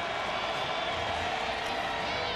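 Steady crowd noise from a football stadium crowd, an even background din with no single sound standing out.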